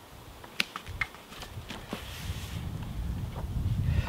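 Hands lifting and re-laying a self-adhesive vinyl sail number on sail cloth: a couple of sharp clicks and small crinkles of the cloth, with a soft peeling rustle around the middle, over a low rumble.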